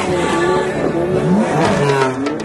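Car engine revving, its pitch rising and falling several times.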